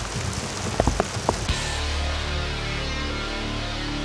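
Steady rain falling, with a few sharp taps, cut off about a second and a half in by the sudden start of music with a steady low note.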